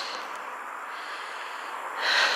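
Steady, even hiss of quiet street ambience, with no distinct event standing out.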